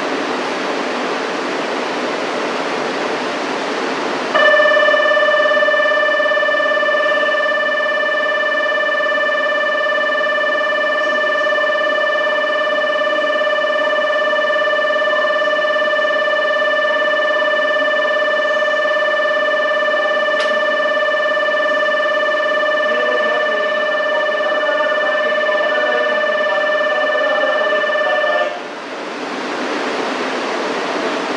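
Station platform departure bell: a steady electronic tone at one pitch starts suddenly about four seconds in, runs for about 24 seconds, and cuts off. It is the signal that the train is about to depart, heard over a steady background hum of the standing train and the station.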